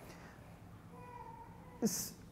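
A quiet pause in a talk: faint room tone with a soft held hum from a voice, then near the end a short falling vocal sound and a brief hiss like an 's'.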